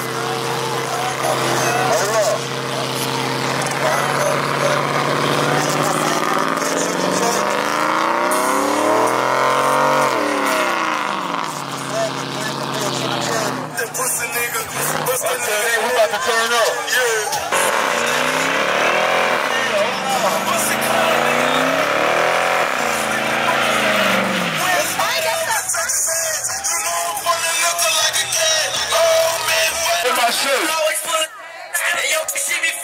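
Pickup truck doing a burnout. The engine is held at a steady high pitch at first, then revved up and down several times while the rear tyres spin, with crowd voices and music mixed in.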